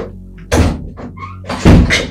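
Two heavy thuds about a second apart, the second the louder, over a steady background music bed.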